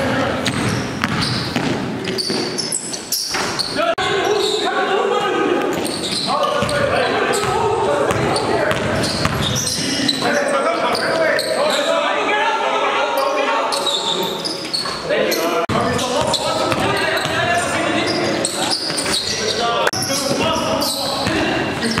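A basketball being dribbled on a gym floor, repeated bouncing thuds, under the continuous talk and calls of players.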